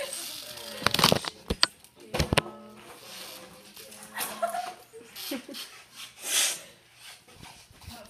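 Stifled giggling and breathy laughter from a few people, broken by several sharp knocks about one and two seconds in.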